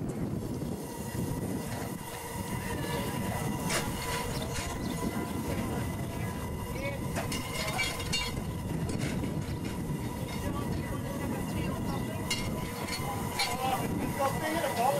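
Ridable miniature steam locomotive and its train running slowly along the track, a steady rumble with irregular sharp clicks from the wheels on the rails, with voices in the background.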